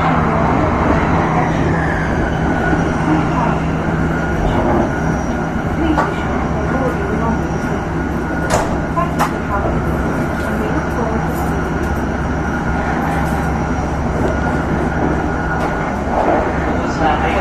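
Running noise inside a Joetsu Shinkansen passenger car at speed: a steady rumble and hum, with a low tone that fades out about four seconds in and two sharp clicks a little past halfway.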